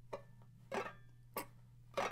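Clawhammer banjo basic stroke played on strings choked with the fretting hand: a fingernail downstroke brushing across the strings, then the thumb catching a string as the hand lifts. It comes out as four short, dry clicks at an even pace.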